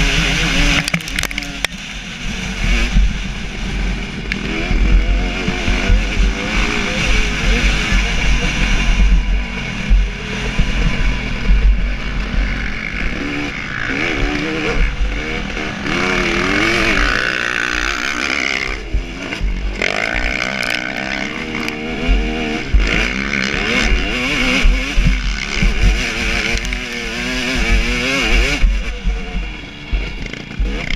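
2017 KTM 250 SX two-stroke motocross engine being ridden hard, its revs rising and falling constantly with throttle and gear changes, with heavy wind rumble on the bike-mounted camera's microphone.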